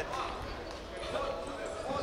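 Ambience of a large sports hall: a low, even murmur with faint distant voices echoing in the room.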